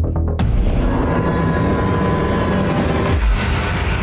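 Movie-trailer soundtrack: dramatic score with a sudden loud boom just under half a second in that rings on under a held tone, and a second low hit about three seconds in. A brief run of quick ticks comes just before the first boom.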